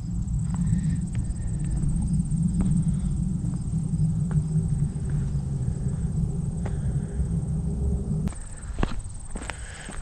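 Wind buffeting the microphone in a low rumble that cuts out suddenly near the end, with a few scattered footstep clicks and crunches on rock and dry brush.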